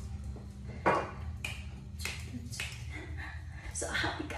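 A handful of light knocks and taps from a plastic cooking-oil bottle being handled and set down on a kitchen counter, the sharpest about a second in. A steady low hum runs underneath.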